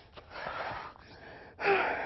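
A woman breathing hard and loudly through her mouth while doing burpees: a long breath about half a second in and a louder gasping breath near the end.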